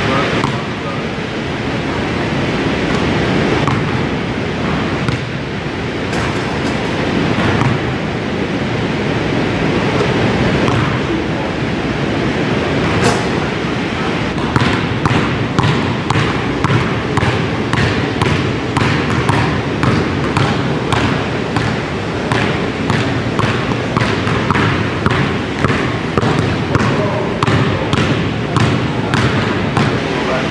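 Basketball being bounced on a hardwood gym floor, the bounces coming repeatedly about twice a second from about halfway through and echoing in the large hall.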